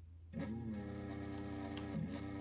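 Small brushless electric motor driven by a Spektrum Avian ESC, starting up about a third of a second in and then running steadily with an even whine, turning in reverse (counterclockwise) after the ESC's direction was switched.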